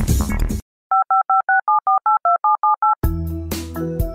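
Touch-tone telephone keypad dialling: a quick run of about eleven two-tone beeps, at slightly different pitches, after electronic music cuts off. About three seconds in, a piano-and-synth music bed starts.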